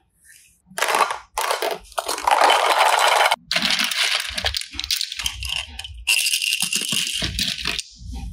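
Small hard plastic snap cubes clattering and rattling against each other as a hand digs and stirs through a bin full of them.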